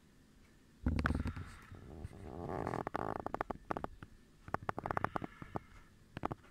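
Handling noise from a hand-held zoom eyepiece moved about close to the microphone. A heavy bump comes about a second in, followed by rubbing with a quick run of small clicks, and more clicks near the end.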